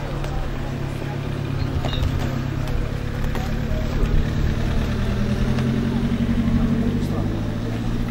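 A motor vehicle engine running steadily at a low pitch, rising a little in pitch in the second half and fading out near the end, under faint crowd talk.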